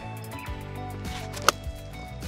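A 60-degree lob wedge strikes a golf ball off a bare desert dirt lie, one sharp crack about one and a half seconds in, with background music running under it.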